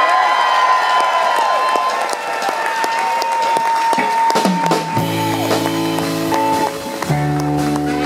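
Live soul band starting a number: a long held high note rings over crowd cheering and applause, then about five seconds in the bass and the rest of the band come in with steady low chords.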